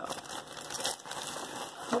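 Plastic bag crinkling and rustling irregularly as it is handled.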